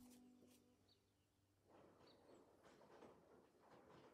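Near silence: background music fades out in the first second, then a faint rustle and a couple of faint high chirps.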